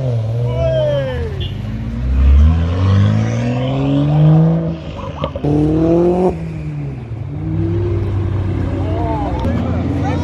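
Sports car engines accelerating hard, one after another, climbing in pitch as they rev. One rev climbs sharply and cuts off suddenly about six seconds in, followed by a steadier engine drone.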